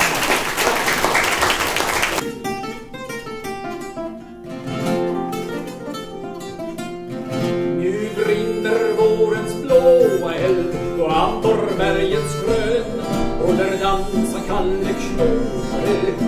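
Acoustic guitar playing a picked accompaniment to a live Swedish troubadour song, with a voice singing over it from about halfway. There is a short rush of noise in the first two seconds.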